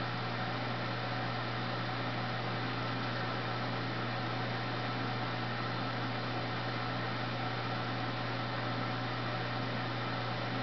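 Steady low hum over an even hiss, with no distinct events.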